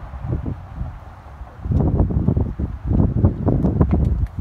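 Wind buffeting the phone's microphone in irregular gusts, a low rumbling noise that grows stronger about halfway through.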